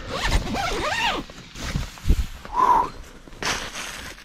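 A short laugh, then the zipper of an insulated tent's door being pulled open in a few rasping strokes.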